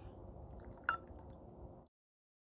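Low steady outdoor rumble on the microphone with one sharp click about a second in, as something right at the camera is handled. The sound cuts off abruptly just before the end.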